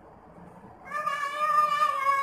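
A single long, high-pitched cry that starts about a second in and is held, wavering slightly, for about a second and a half. Before it there is only quiet room tone.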